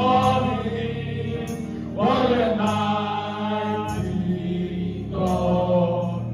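Two women singing a gospel worship song together through microphones, in long held notes over a steady low accompaniment.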